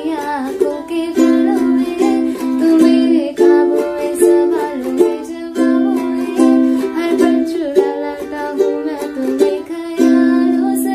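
A woman singing a Hindi song while strumming chords on a ukulele in a steady rhythm, cycling through Dm, C, Gm and C.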